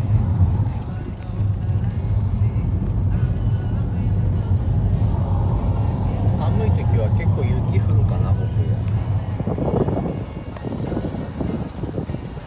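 Steady low engine and road drone heard inside a lowered Honda Jade's cabin as it drives; the drone drops away about ten seconds in.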